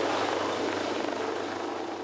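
Coastguard search-and-rescue helicopter hovering overhead: steady rotor and engine noise heard from the yacht's deck below.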